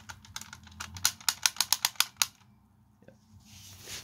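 Clicking neck joint of a Transformers Masterpiece Grimlock toy as its head is turned by hand: a quick run of plastic clicks for about two seconds, getting faster, then stopping.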